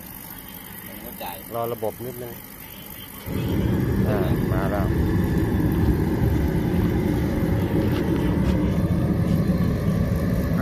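A kerosene-fired forced-air heater lights up about three seconds in. A sudden steady low rush of burner flame and blower fan starts and runs on evenly: the burner has ignited and the heater is running.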